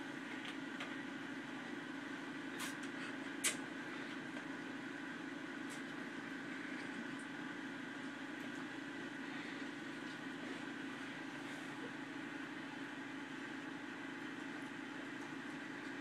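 A steady low room hum with faint hiss. About two and a half and three and a half seconds in come two sharp clicks, the second louder: the plastic cap of a lemon-juice bottle being twisted off.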